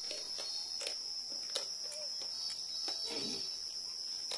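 A steady, high-pitched drone of crickets, with sharp pops from the open wood fire scattered through it.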